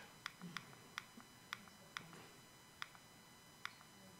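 Faint, sharp clicks of a handheld presentation remote's button, pressed about seven times at uneven intervals while stepping back through slides.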